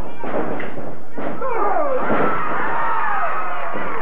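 A few heavy thuds of wrestlers' bodies on the ring in the first second or so, then a small studio crowd yelling in many overlapping voices.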